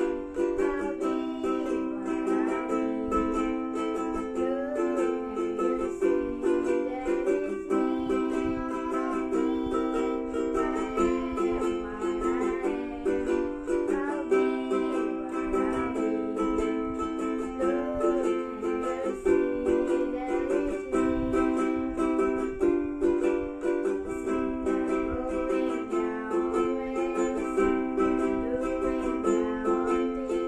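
A solo ukulele playing a song: a plucked melody over chords at a steady tempo.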